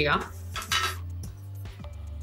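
A short metallic clatter of dressmaking scissors being handled, about half a second in, over faint background music.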